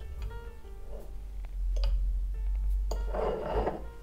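Background music, with a few light clinks of a metal spoon against a ceramic dessert plate as a slice of cake is cut, and a short soft noise near the end.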